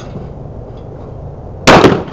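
A shotgun fired once, a sharp, very loud report near the end that rings on for a moment.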